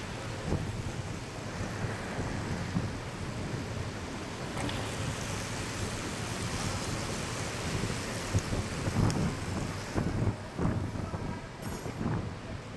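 Track bikes passing on a wooden velodrome track: a steady rush of tyres and air that swells as a pack sweeps close by about halfway through. Several low thumps follow shortly before the end.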